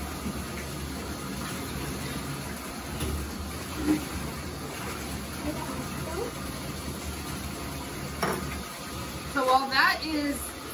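Bathtub tap running steadily into a half-filled tub, an even rushing of water, with a short sharp click about eight seconds in.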